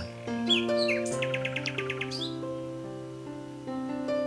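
Gentle instrumental background music of held, sustained notes with bird chirps over it: a couple of short falling chirps about half a second in, then a quick trill of about ten notes between one and two seconds in.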